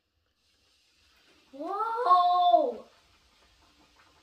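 A single drawn-out vocal call, rising then falling in pitch, lasting just over a second.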